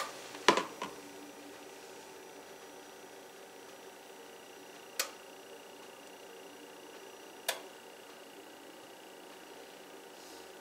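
A few sharp light clicks of a silicone spatula and a plastic tub being handled over a glass baking dish while cream cheese filling is dolloped out: a double click about half a second in, then single clicks about five and seven and a half seconds in, over a steady faint kitchen hum.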